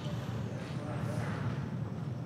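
Outdoor site ambience: a steady low rumble with faint distant voices.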